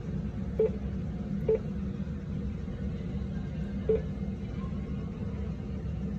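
Three short beeps from an InBody body-composition analyser's keypad as its buttons are pressed: one about half a second in, another a second later, and a third near four seconds. A steady low hum runs underneath.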